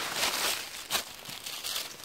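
Dry leaf litter rustling and crunching, louder at first, with a single sharper crunch about a second in.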